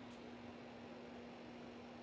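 Faint room tone: a steady hiss with a low, constant electrical hum.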